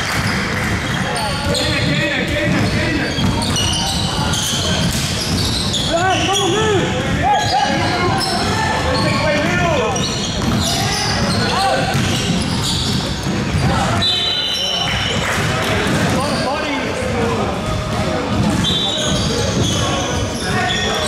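Basketball game on a hardwood court in a large hall: the ball dribbling, sneakers squeaking on the floor, and players' voices calling out.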